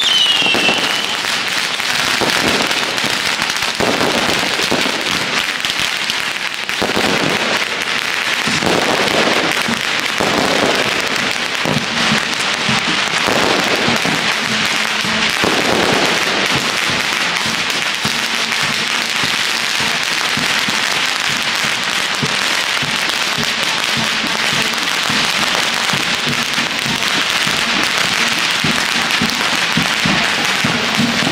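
Strings of firecrackers going off in a continuous, dense crackle.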